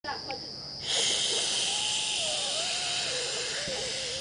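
A person making a long, breathy hissing sound, with a thin wavering tone that drifts down in pitch. It starts abruptly about a second in, over a faint steady high chirring.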